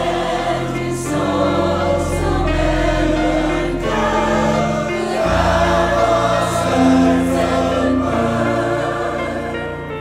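Mixed church choir of men's and women's voices singing a hymn in parts, over instrumental accompaniment with sustained low bass notes that shift to a new chord about halfway through.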